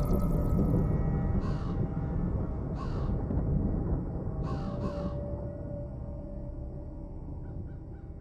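A crow cawing four times, two single caws and then a quick pair, over a deep rumbling drone of horror-style intro music that slowly fades toward the end.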